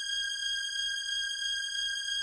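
A steady, high-pitched electronic beep held on one note: a censor bleep tone.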